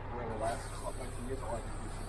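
Site ambience: a low steady engine hum, with faint distant voices in the first second or so.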